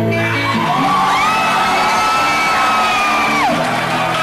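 Live acoustic song: a single voice holds one long high whooping note over acoustic guitar, gliding up into it about a second in and dropping away about three and a half seconds in.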